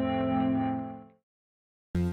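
Background music: a sustained chord of steady, layered tones that fades out about a second in, then silence, then a new chord striking sharply just at the end.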